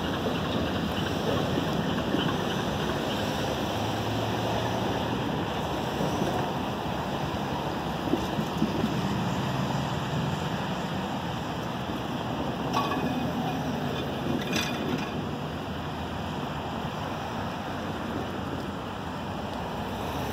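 Diesel freight locomotives running as the train moves off, a low engine hum under wind noise on the microphone, fading slowly as it gets farther away. Two brief sharp sounds come about two-thirds of the way through.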